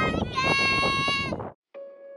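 A young child's high-pitched, drawn-out shout, with adult voices joining at its start, cut off abruptly about a second and a half in. Near the end a soft struck note of background music begins and rings on.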